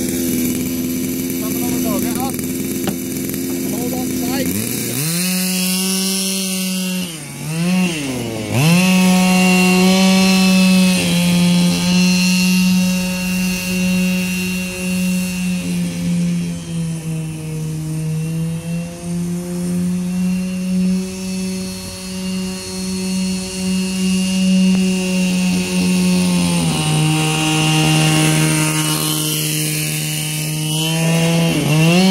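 Gas-powered Losi DBXL 1/5-scale RC buggy's two-stroke engine running hard while towing a sled. It revs down and up several times about five seconds in, then holds a steady high note, dropping a little in pitch a few seconds before the end.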